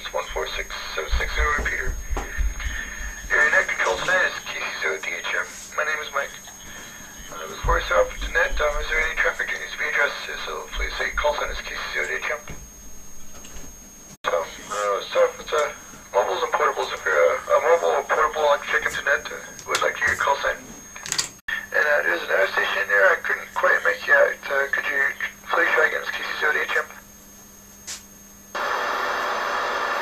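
Voices received over an ICOM radio, thin and narrow-band from the radio's speaker, talking in several stretches with short pauses. Near the end the voices stop and a steady rush of static takes over.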